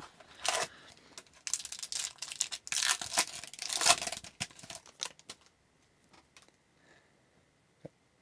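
Foil-lined wrapper of a 2022-23 Upper Deck Extended Series hockey card pack being torn open and crinkled by hand, in short irregular bursts that stop about five seconds in.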